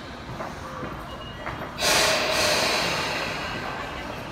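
Sudden loud hiss of compressed air from a Tobu electric train standing with its doors shut, starting a little under two seconds in and slowly dying away: the air brakes releasing just before departure.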